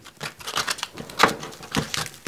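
Emery cloth and masking tape on a wooden buff stick being rolled over and pressed down on a wooden bench: a string of irregular clicks, taps and crinkles, a few sharper ones standing out.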